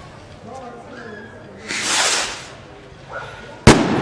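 A skyrocket firework hissing as it goes up, then bursting with one sharp, very loud bang near the end.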